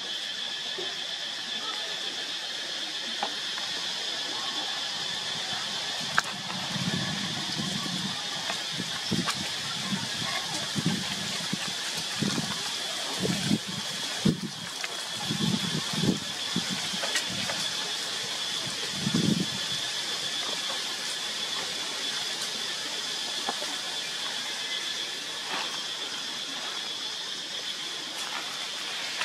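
Outdoor ambience with a steady, high, even buzz, with a run of short, low, muffled murmurs like distant voices through the middle.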